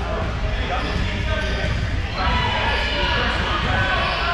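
A basketball bouncing on a hardwood gym floor, with players' and spectators' voices around it.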